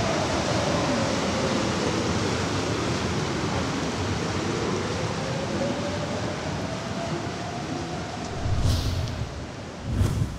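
A steady wash of noise with a faint tone that slowly wavers up and down, gradually fading. A brief whoosh comes near the end, then a hit as the music-free outro closes.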